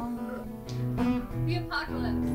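Acoustic guitar playing held, ringing chords.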